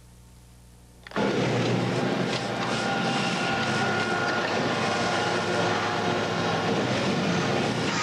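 Loud, steady din of factory machinery that starts suddenly about a second in, after a low hum.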